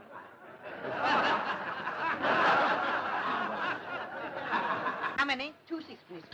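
An audience laughing together, swelling about a second in and dying away after about four seconds.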